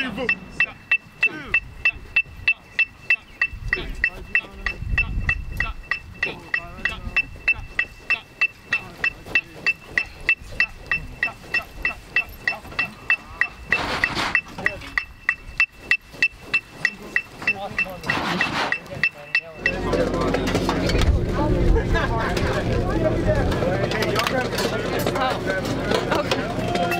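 Electronic rehearsal metronome beeping an even, fast beat, about two and a half beeps a second, over faint voices and outdoor practice noise. About twenty seconds in the beeping stops and louder music takes over.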